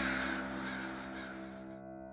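A large flock of crows cawing together, fading out and gone shortly before the end, over a held chord of background music.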